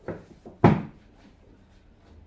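A couple of light knocks, then one loud thud a little over half a second in: books being set down onto a bookshelf.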